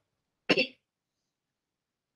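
A person coughs once, briefly, about half a second in.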